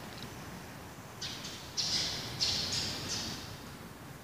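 A bird calling: a quick run of about five short, high-pitched calls, starting a little over a second in and ending around three seconds in, over faint room noise.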